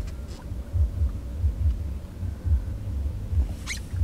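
Wind buffeting the microphone: an uneven low rumble that swells and dips in gusts, with a brief high sound near the end.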